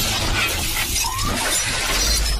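Cinematic logo-intro sound effects: a loud, dense, noisy wash of effects with a short rising tone about a second in.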